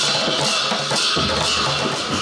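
A group of large Newar dhime barrel drums beaten together in a marching procession, a dense, steady drumbeat.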